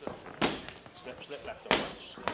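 Boxing gloves smacking into focus mitts twice: a sharp hit about half a second in and a louder one near the end.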